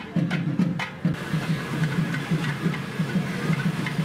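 Festival percussion: sharp wooden clicks over a steady drum beat for about the first second, then the sound changes abruptly to drumming at about four beats a second under a noisy hiss of crowd and ambience.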